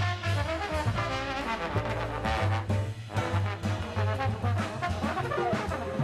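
Jazz quartet playing a tune with the trombone out front, over piano, bass and drums.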